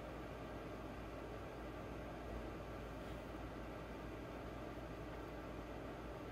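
Faint, steady background hiss with a low hum underneath: room tone, with no distinct sound event.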